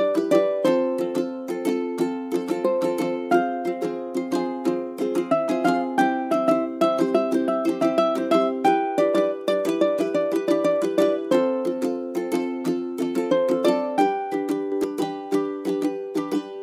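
Background music: a light plucked-string tune of quick, evenly picked notes over chords that change every second or two.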